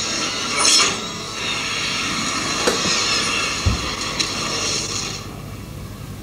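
Action-film soundtrack effects: a dense hiss with scattered metallic clinks and knocks and a low thud a little before four seconds in, easing off after about five seconds.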